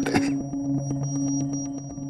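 Background music score: a low held drone with light ticking beats over it.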